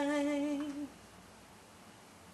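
A woman singing unaccompanied holds the final note of a gospel song with a light vibrato. It ends just under a second in, leaving faint room hiss.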